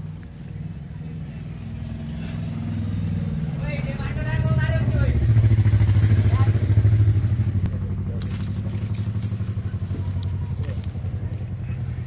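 A motor vehicle engine running close by, a low steady hum that grows louder to its peak about five to seven seconds in and then eases off.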